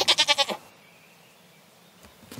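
A short, quavering laugh lasting about half a second at the start, then quiet.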